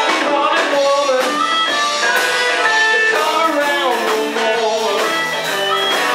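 Live blues-rock band playing: electric guitars and drums, with a harmonica played into a microphone.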